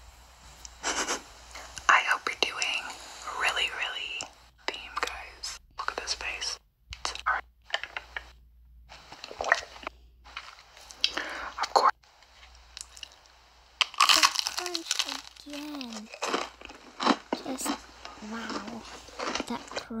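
Close-miked ASMR eating sounds: crunchy bites and chewing in many short bursts, with some soft voice sounds among them.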